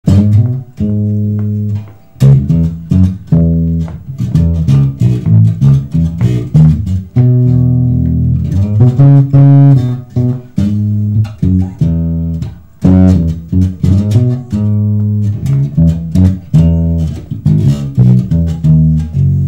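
Solo electric bass guitar played by hand, with no other instruments: a melodic line of plucked notes, some quick and some held for about a second.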